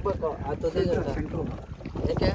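Wind rumbling steadily on the microphone over open water, with people talking indistinctly during the first second.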